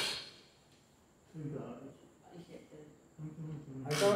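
Faint voices talking in two short stretches, beginning after about a second of near quiet.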